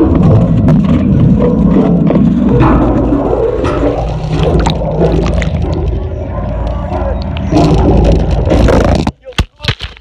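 Loud, muffled water rumble and knocking picked up by a phone's microphone through its waterproof case while it sits submerged. The sound cuts off suddenly about nine seconds in, followed by a few sharp clicks.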